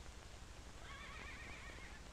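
A quiet pause in the soundtrack's faint hiss, with a faint, high animal call lasting about a second, starting just under a second in.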